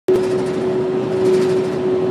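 Cabin noise of a cargo van driving at highway speed: steady road and engine noise with a constant hum.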